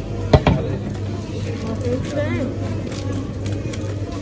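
Shop ambience: a steady low hum with faint voices, broken by one sharp knock about a third of a second in.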